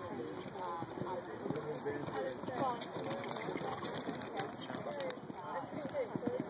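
Background chatter: several people talking at once, none of it clear enough to make out.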